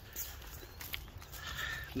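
Wind rumbling on a phone microphone outdoors, with faint, irregular footsteps on a grassy path.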